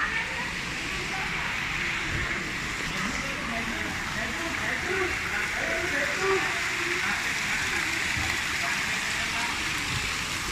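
Fountain jets splashing into a pool, a steady rush of water, with people chattering in the background.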